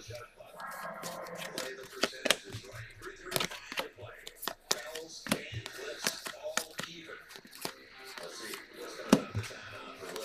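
Stiff chrome baseball cards handled and flipped one by one off a stack in the hand, making irregular sharp clicks and slides of card against card, several a second.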